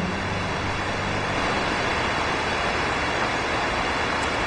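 Steady, even rushing noise of outdoor ambience, with no tone, rhythm or distinct events.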